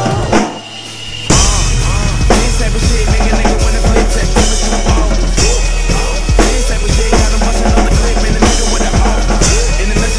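Pearl drum kit played along to the recorded song, a steady groove with kick drum and snare over the backing track. The music drops out briefly just after the start, then the full kit comes back in with a loud hit about a second in.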